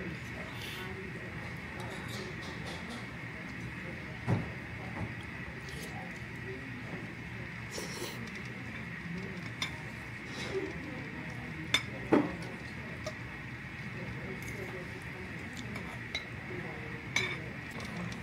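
Metal fork clinking and scraping against a ceramic plate while eating noodles. A few sharp clinks stand out over a steady low room hum.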